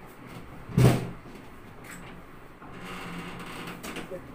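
A steel wardrobe being searched: a short, loud burst about a second in, then softer rustling of things being moved about inside the cupboard towards the end.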